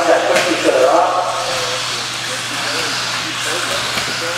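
1/10-scale electric RC buggies with 17.5-turn brushless motors racing on an indoor dirt track, heard as a steady hissing whine of motors and tyres. Voices talk over it in the first second.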